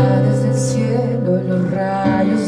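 A man singing to his own electronic keyboard accompaniment: a sung word drawn out over held keyboard chords, with a new chord struck at the start.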